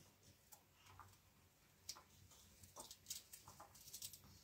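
Near silence with a few faint, scattered light clicks and taps from food being peeled and cut by hand over a metal tray and a small plate.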